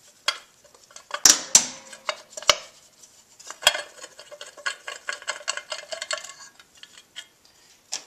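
Metal clinks and clanks of a hand tool and loose bolts as the aluminium left crankcase cover of a Honda XR70R is worked free, followed a few seconds in by a run of quick light ticks.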